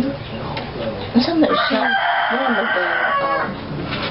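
A rooster crowing once, a long call of about two seconds beginning a little over a second in.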